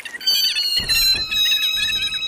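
A cartoon-style music sting of several held high tones, with a low thump a little under a second in and another near the end.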